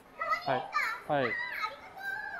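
Speech only: a high-pitched woman's voice saying "wah, arigatou" ("wow, thank you").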